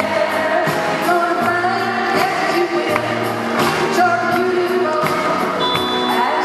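Live pop performance: a woman singing a melody to grand piano and band accompaniment with a steady beat, recorded from the audience in a large hall.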